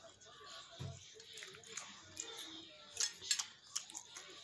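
A person chewing food close to the microphone, with wet mouth clicks and lip smacks, a few sharper ones about three seconds in.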